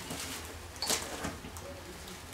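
Faint handling sounds of drinking glasses being picked up and held, with one light click about a second in and a few softer ticks after it.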